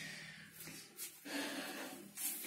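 A person's faint breathing close to the microphone, with a slightly louder breath in the second half.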